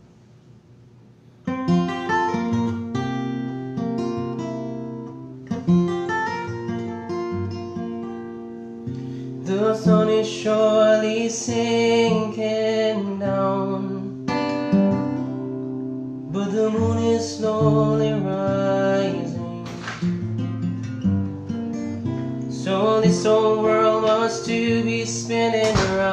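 Taylor acoustic guitar with a capo, played in a steady accompaniment pattern that starts about a second and a half in. A man's voice sings along from about ten seconds in, in phrases with short gaps.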